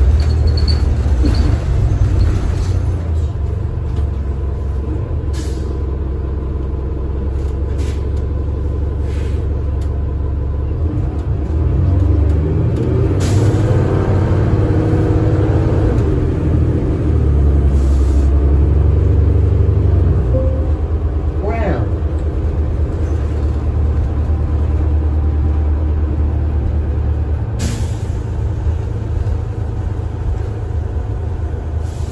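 Cabin sound of a 2013 New Flyer Xcelsior XD40 city bus running on its Cummins ISL9 inline-six diesel and Allison B400R automatic: a steady low drone that builds and shifts in pitch for several seconds partway through as the bus pulls. A short rising whine follows, and several short air hisses are heard.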